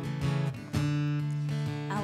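Acoustic guitar playing chords on its own between sung lines, with a fresh chord struck about three-quarters of a second in.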